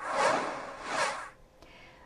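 A whoosh sound effect marking a graphic transition: two quick swells of airy rushing noise that stop about a second and a quarter in.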